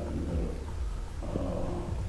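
A man talking in a muffled, low-quality covert recording of a conversation, over a steady low hum.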